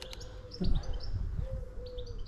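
A pigeon cooing, a series of low, held notes about half a second each, with small birds chirping high above it.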